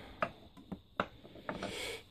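Light clicks and knocks of wooden briar pipes against a wooden pipe rack as a pipe is lifted out of it, followed by a short rubbing rustle near the end.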